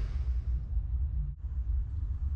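Low, uneven rumble, dipping briefly past the middle.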